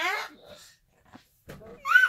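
A toddler's high-pitched squealing, twice: a rising squeal at the start and a shorter, louder one near the end.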